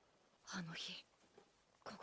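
A short, quiet bit of speech, a word or two about half a second in, lasting about half a second.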